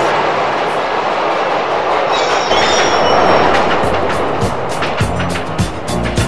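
Elevated subway train rushing past close by: a loud, steady rush of wheels on the track with a brief high wheel squeal partway through. Disco music with a regular beat comes in about four and a half seconds in.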